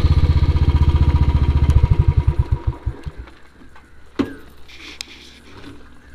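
Motorcycle engine running at low revs as the bike rolls to a stop, its exhaust beats spacing out and dying away about three seconds in as the engine shuts off. Two sharp knocks follow near the end.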